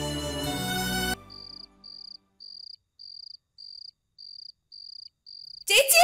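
Sad background music stops about a second in, leaving a cricket chirping in short, high, evenly spaced pulses, about two a second, as night ambience. A loud, sudden music sting cuts in near the end.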